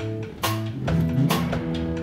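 Live electric blues band playing an instrumental passage, with two electric guitars, electric bass and a drum kit keeping a beat with cymbal hits.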